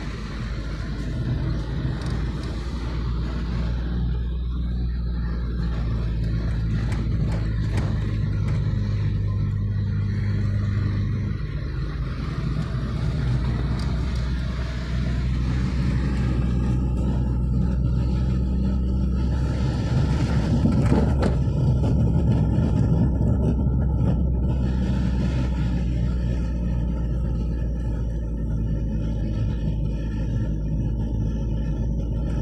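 Car engine and tyre noise heard from inside the cabin while driving: a steady low hum whose note shifts about a third of the way through and again just past halfway.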